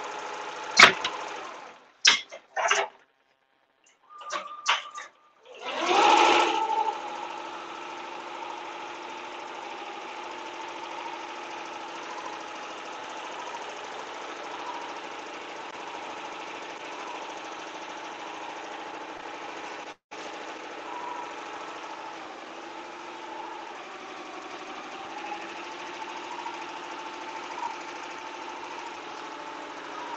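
Tajima multi-needle embroidery machine stitching steadily, a running drone with several held tones. In the first few seconds there are some sharp clicks and the sound cuts out briefly, followed by a loud thump about six seconds in.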